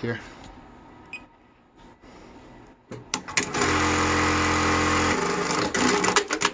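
A JUKI DDL-9000C industrial lockstitch sewing machine starts a little past halfway in. It sews at one steady speed, with an even hum, for about a second and a half, then stops abruptly. A few sharp clicks follow near the end.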